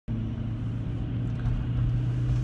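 A car's engine running, heard from inside the cabin as a steady low hum and rumble.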